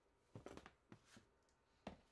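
Faint knocks and clicks of a clear plastic storage tote and its lid being handled: a quick cluster about half a second in, then a single sharper knock near the end.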